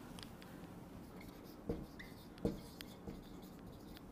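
Marker pen writing on a whiteboard: faint scratching strokes, with two sharper taps of the pen against the board near the middle.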